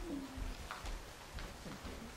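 Footsteps on a wooden stage: a few irregular heel clicks and soft thuds. Near the start there is a short, low, voice-like coo.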